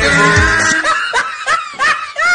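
Music with a bass beat that drops away about a second in, giving way to a high-pitched laugh repeated in short giggles.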